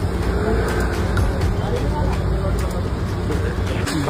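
Street traffic noise, a steady low rumble of passing vehicles, with faint voices in the background.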